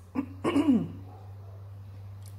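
A woman clearing her throat: two short bursts in the first second, the second falling in pitch.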